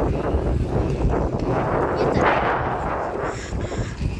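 Wind buffeting a phone's microphone, a loud, uneven low rumble with irregular knocks, swelling about two seconds in.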